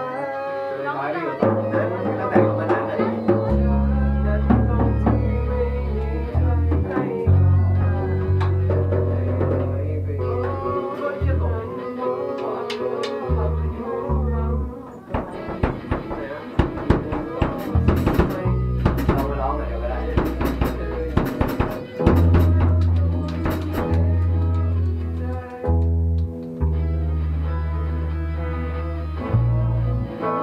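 A rock band playing live in a rehearsal room: electric guitars and bass guitar over a drum kit. The drums and cymbals are busiest in the middle of the passage, with steady low bass notes throughout.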